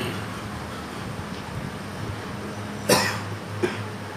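A man coughs once about three seconds in, with a smaller follow-up sound just after, during a pause in the lecture. A faint steady hum runs underneath.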